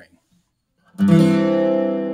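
Octave mandolin strummed once in a C chord about a second in, the chord ringing on steadily after the strum.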